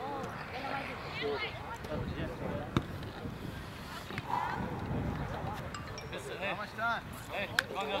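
Indistinct chatter of several people talking at a distance, with two sharp clicks and a brief low rumble around the middle.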